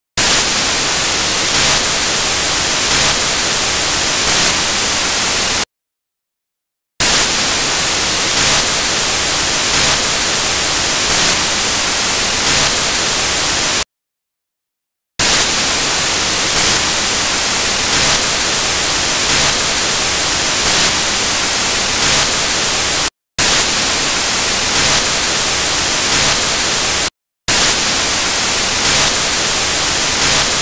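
Loud steady static hiss filling the audio track, with no voice audible through it, cut by sudden dropouts to dead silence about six and fourteen seconds in and two brief ones later: a faulty recording that has swamped the lecture audio.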